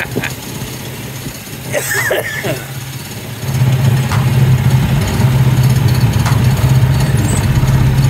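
Small engine of an antique-replica amusement-ride car running at low speed, then getting louder about three and a half seconds in as the gas pedal is pressed, and running on as a steady hum. A short laugh comes before the engine picks up.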